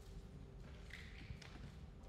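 Faint room noise: a low rumble and a steady faint hum, with one soft knock after about a second.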